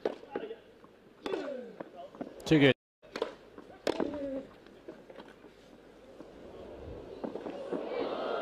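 Tennis rally on a grass court: sharp racket-on-ball strikes with short vocal grunts or exclamations, cut off abruptly a little under three seconds in. A couple more strikes and a voice follow, and crowd noise swells near the end.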